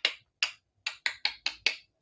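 A quick, uneven run of about eight sharp clicks, sparse at first and coming faster in the second half.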